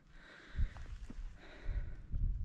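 Gusty wind rumbling on the camera microphone, with a short gust about half a second in and a stronger one near the end, and a few faint knocks.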